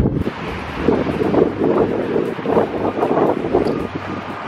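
Gusty wind buffeting a handheld camera's microphone, a loud rough rush that swells and dips.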